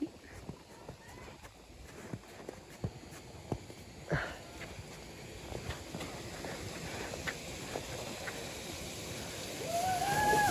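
Crunching of granular spring snow with scattered small knocks, then a steady sliding hiss that grows gradually louder through the second half as a person glissades down the snow chute on his backside toward the microphone.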